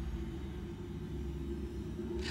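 A low, steady hum.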